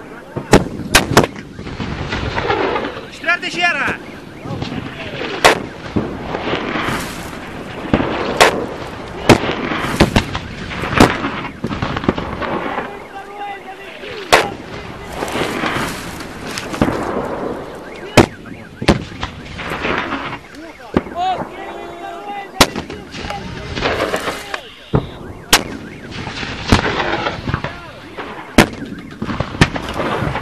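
Repeated gunshots and blasts of combat, sharp reports coming irregularly every one to three seconds, with voices heard between them.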